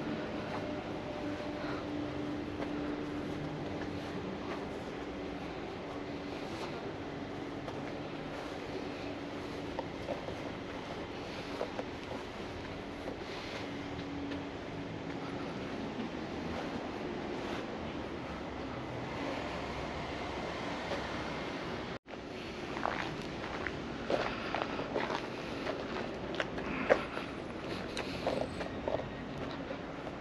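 Steady outdoor background noise with a faint low hum through the first half. After an abrupt cut about two-thirds of the way in, scattered sharp clicks and knocks are heard.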